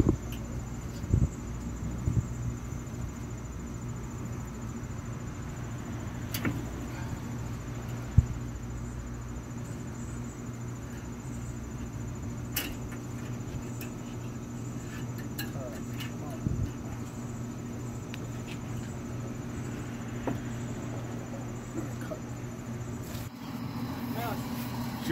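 A steady low mechanical hum with a few scattered sharp knocks and clicks as a brisket is handled onto a smoker's cooking grate.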